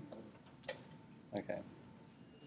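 A single sharp click in a quiet room, followed by a short spoken "okay".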